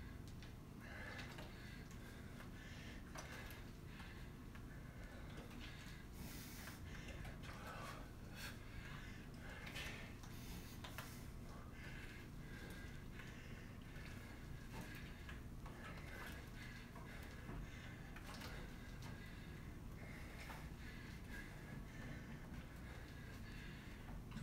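A man breathing hard, with short forceful breaths through the nose, as he works through squat upright rows with gallon jugs. Under it is a faint steady room hum.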